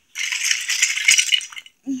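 Loose small plastic toy pieces rattling and clattering together as they are gathered up and moved, for about a second and a half before stopping shortly before the end.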